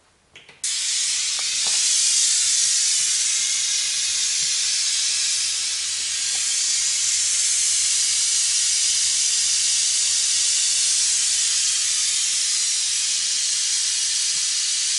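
Pink noise played through a single tweeter on a passive crossover for a real-time-analyser frequency-response test: a steady hiss with no low end. It starts abruptly about half a second in, after a couple of clicks.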